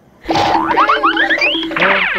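A short comic music cue added in editing: quick upward-sliding, cartoon-style tones over a held low note, starting about a quarter second in.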